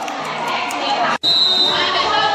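A voice over a loudspeaker with crowd noise around it. It breaks off in an abrupt cut about a second in, and a high steady tone sounds for about half a second after it.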